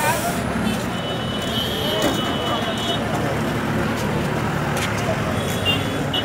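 Street traffic noise with people talking in the background. A high steady tone sounds for about two seconds, about a second in.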